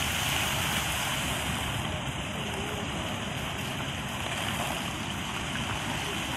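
Steady rushing and splashing of many fountain jets spraying up and falling back into a shallow pool.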